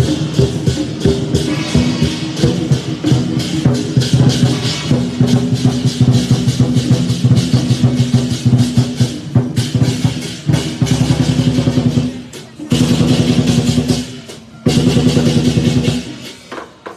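Chinese lion dance percussion: a large drum with clashing cymbals and a gong playing a rapid beat, with two short breaks near the end.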